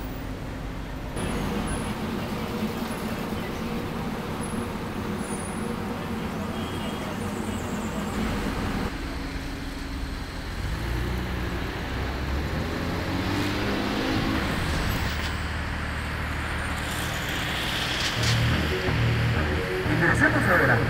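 Busy city street traffic: cars running and passing, with music playing at the same time.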